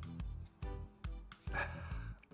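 Soft background music of pitched notes repeating about twice a second. Near the end comes a short, breathy sniff as the whisky is nosed.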